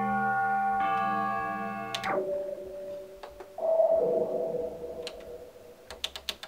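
Nord Lead synthesizer sounding a sustained chord that changes once and cuts off after about two seconds. A softer note follows, then a new note about three and a half seconds in that fades away. Faint clicks from its controls fall between the notes.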